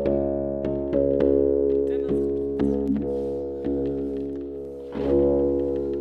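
La Diantenne 2.0, a self-built electronic instrument, playing a held, organ-like chord with many sharp note attacks over it; the sound fades a little, then swells up again about five seconds in.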